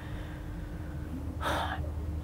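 A man takes a short breath in about one and a half seconds in, over a steady low hum.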